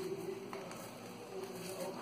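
Scissors cutting into a plastic gel tube: a few faint snips, with low voices in the background.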